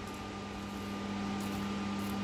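Small fume extractor fan running steadily, a low even hum with a faint hiss.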